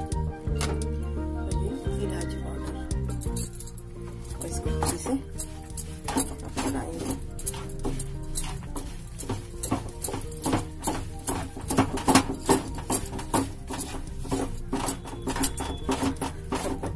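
Background music; from about four seconds in, a spatula repeatedly scrapes and clinks against a nonstick pan as a dry sesame-seed mix is stirred.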